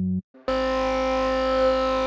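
Surge software synthesizer: a short note cuts off, and after a brief gap a new wavetable patch sounds one long held note, buzzy with many overtones, with a slow phaser sweep moving through its upper tones.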